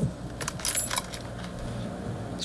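Brief metallic jingling with rustling, about half a second to a second in, as a man gets up from a table gathering a folder and papers.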